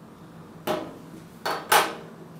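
A glass beer bottle and beer glasses knocking and clinking on a table: three sharp knocks in the second half, the last the loudest.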